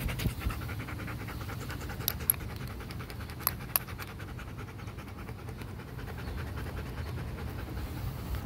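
A Siberian husky panting rapidly and evenly, with two pairs of sharp clicks, about two and three and a half seconds in.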